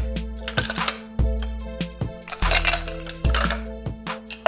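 Ice cubes poured from a metal shaker tin into a tall highball glass, a quick run of clinks and clacks as the cubes tumble in and settle, over background music.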